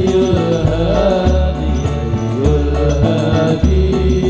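Hadroh al-Banjari music: deep, booming drum hits and hand-drum patterns under a chanted sholawat melody.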